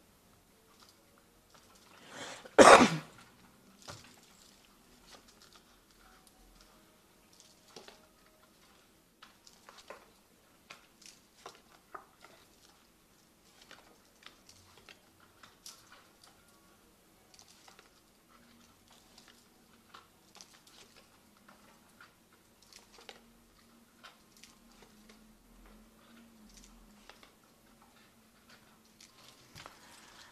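Tarot cards being dealt and laid down one by one on a cloth-covered table: many soft, scattered taps and small clicks. A single short cough comes about two and a half seconds in and is the loudest sound.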